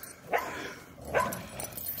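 Dog vocalising during a tug-of-war pull: three short, rising whines or yips, spaced a little under a second apart.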